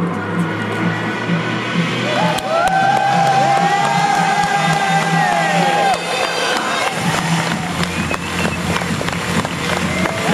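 Background music with a steady beat, joined for a few seconds around the middle by an audience cheering and whooping, with clapping through the later part.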